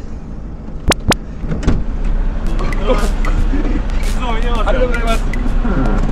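Two sharp clicks about a second in, then the steady low hum of an idling truck diesel engine comes in, with a man's voice talking over it.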